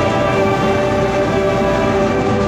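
Youth steel pan, brass, woodwind and drum ensemble holding a long, loud sustained chord, with drums busy underneath.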